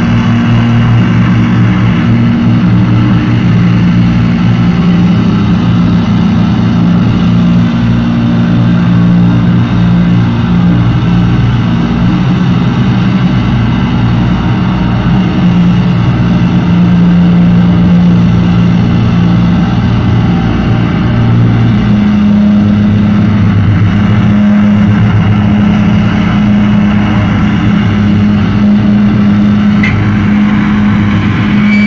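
Live rock band playing loud, heavily distorted electric guitar and bass, holding long low chords that change every several seconds, with drums underneath.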